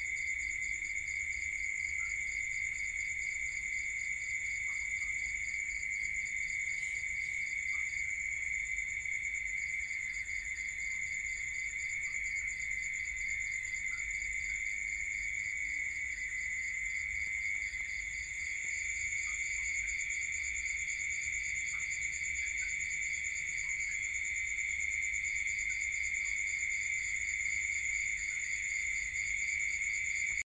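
A continuous chorus of singing insects: several steady trills at different pitches run together, one of them pausing for about a second twice.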